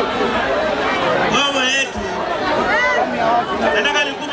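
Speech and chatter: several voices talking and calling out over one another, in a hall with an audience.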